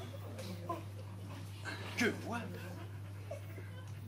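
Sparse vocal exclamations from a stage performer: a short "oh" near the start and a sharper falling vocal sound about two seconds in. A steady low electrical hum runs underneath.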